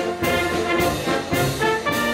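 Austrian village wind band (Blasmusik) playing live, with trumpets and trombones holding full chords. The notes move in steps, with a new attack every half second or so.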